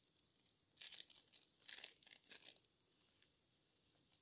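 A small packet torn open and crinkled by hand: faint, papery rustling in three short bursts, about a second in, near the middle and just after.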